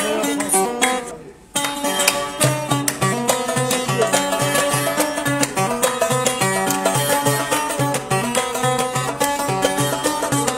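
Kabyle-style instrumental on a mandole, an Algerian long-necked plucked lute: the playing dies away about a second in, then resumes sharply as an even, rhythmic run of plucked notes with a steady low pulse.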